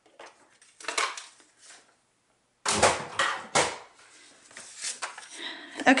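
A paper trimmer being moved aside and set down on a table, a cluster of knocks and clatter about three seconds in, with soft rustling of cardstock before and after.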